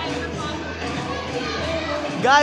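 Background hubbub of children playing and talking in a large indoor hall, with faint music underneath, holding at a steady moderate level.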